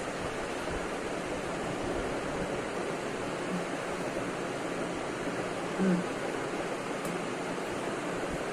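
Steady background hiss, with a person chewing food and giving a short closed-mouth 'mm' of enjoyment about six seconds in.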